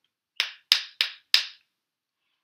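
A pair of wooden rhythm sticks struck together four times, sharp dry clicks in the rhythm of 'shoo-be-dee-doo', the second playing of the pattern.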